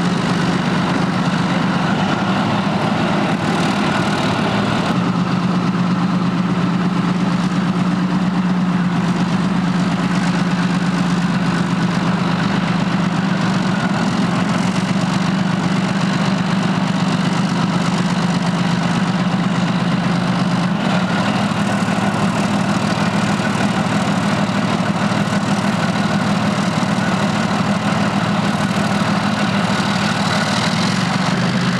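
Leopard 2 main battle tank's MTU V12 diesel engine running at low revs as the tank creeps along railway flatcars: a steady low drone, shifting slightly about 21 seconds in.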